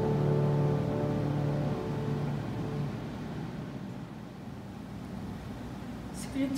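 The last held chord of a hymn from a small group of singers with keyboard accompaniment, dying away over about the first three seconds. A low steady hum of room noise is left after it.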